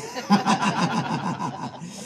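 A man laughing into the microphone, a quick run of short chuckles that fades toward the end.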